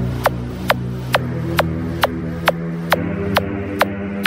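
Full-bass DJ remix dance music: a sharp, evenly spaced beat about twice a second over a sustained, heavy bass drone.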